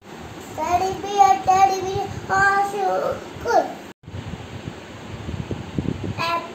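A young child singing a few held, steady notes for about three seconds. After a short break come quieter small knocks and handling noises.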